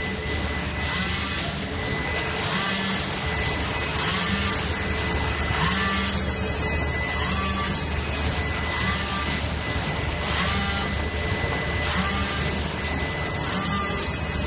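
HC-180G automatic horizontal premade-pouch packing machine running. A steady whine and low hum carry under a working cycle of short rising whirs and hisses that repeats about every second and a half as it fills and seals pouches.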